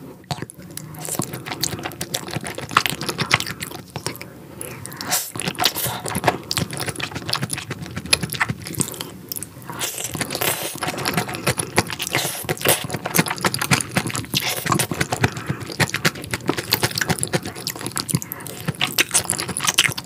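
Close-miked chewing of a spicy raw-fish salad with noodles: a dense, irregular run of wet mouth clicks and small crunches.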